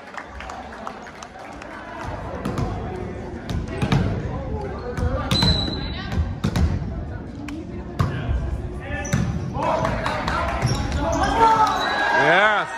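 A volleyball bounced several times on a hardwood gym floor by the server before the serve, each bounce a sharp thud echoing in the hall, with a short high whistle blast partway through. Players' and spectators' voices and shouts rise near the end.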